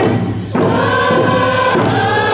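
Music with a group of voices singing in held notes, dipping briefly just before half a second in.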